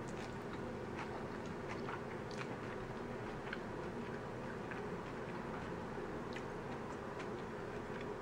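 A person chewing a mouthful of spaghetti squash with meat sauce, with faint, irregular small clicks of the mouth and food. A steady low room hum runs underneath.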